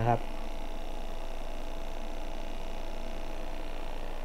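ATMAN ATOM-2 battery-powered aquarium air pump running with a steady hum, driving air through an airline to a larger air stone bubbling in a fish tub. The bigger air stone lowers the pump's noise, but it is still fairly loud.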